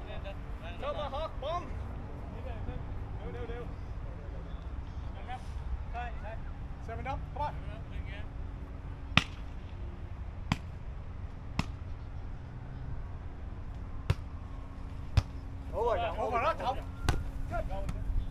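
A volleyball struck six times in a rally, each contact a sharp slap about a second apart, starting about halfway through. Players' voices call out briefly near the end over a steady low outdoor rumble.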